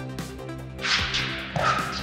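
Electronic background music with a steady beat. About a second in, tennis shoes scuff and then squeak briefly on the hard court as the player sets his feet.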